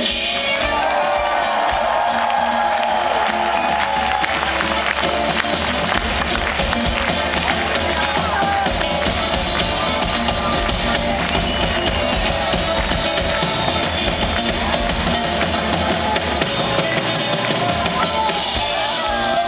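Live band playing an instrumental passage: drum kit, guitars, accordion and violin in a dense, steady mix, heard from among the audience.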